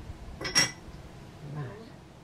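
A single sharp, ringing china clink about half a second in, as a lid is set back on a porcelain teapot.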